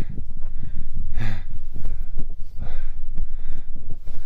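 Wind buffeting the microphone in a steady low rumble, with three short hissing bursts near the start, about a second in, and past the middle.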